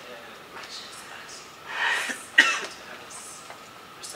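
A person coughing: a rough cough a little before halfway, then a sharper, louder one right after it.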